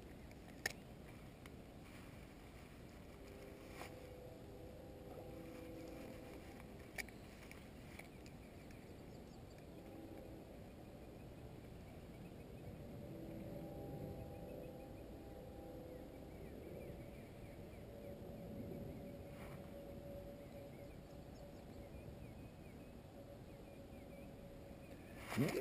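Faint lakeside ambience: a low, even rumble with the faint, wavering hum of a distant motor coming and going. Two sharp clicks stand out, one just after the start and one about seven seconds in.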